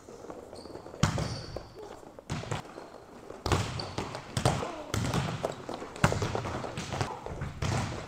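Volleyballs being hand-spiked and bouncing on a hard gym floor: a string of irregular slaps and thuds, about one every half-second, from several players hitting at once.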